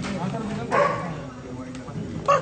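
A dog barks once, a short sharp bark about two-thirds of a second in, over a low murmur of voices.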